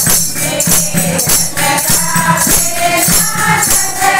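A group singing a Haryanvi devotional song in chorus, with hand-clapping and jingling percussion keeping a steady beat of about two strokes a second.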